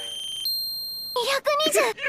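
Electronic beeping from a smartwatch heart-rate readout: a brief steady tone, then one longer high beep lasting under a second.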